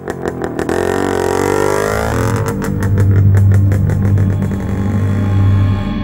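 Motorcycle engines revving, rising in pitch over the first couple of seconds, mixed with background music that has a deep steady drone and a regular beat.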